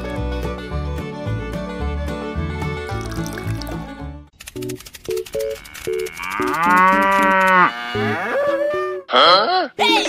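Background music with a steady beat for the first four seconds, then a cow mooing once in one long call, with a few short musical notes around it; a shorter, higher call follows about nine seconds in.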